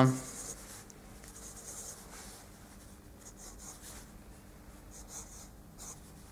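Soft, scratchy pencil strokes on paper, several short dabs drawing small spots on a sketch. A faint steady hum runs underneath.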